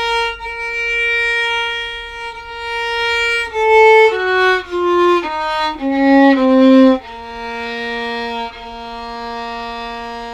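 Solo violin playing one descending octave of a B-flat harmonic minor scale. A long bowed note is held for about three and a half seconds. It is followed by seven shorter notes stepping down, then a low note held long over the last three seconds.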